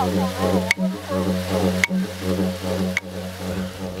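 Didgeridoo playing a steady low drone with rhythmic pulsing and shifting overtones, with three sharp clicks about a second apart.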